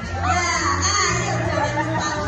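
Music with a steady bass line playing under a group of people's excited overlapping voices and calls.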